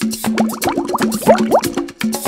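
Background Latin percussion music with quick wood-block-like strokes over a repeating low pitched figure, and a run of short rising, plop-like notes in the middle.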